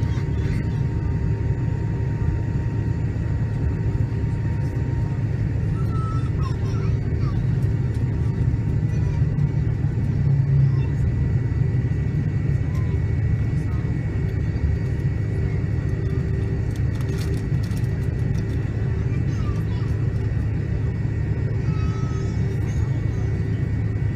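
Steady low cabin rumble of a McDonnell Douglas MD-88 taxiing, its rear-mounted Pratt & Whitney JT8D engines running at low power, with a faint steady whine over it.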